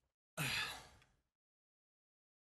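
A man's short, breathy sigh, about half a second long, starting about a third of a second in.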